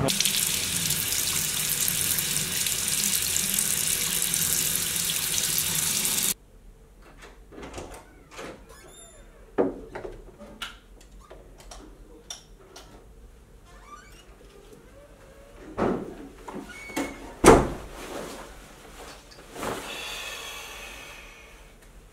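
A loud, steady rushing noise cuts off abruptly about six seconds in. A quiet small room follows, with scattered knocks and clicks of objects being handled, a sharp thump near the end, and a short rustle after it.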